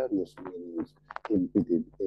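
Speech: a lecturer talking, with a sustained held vowel partway through.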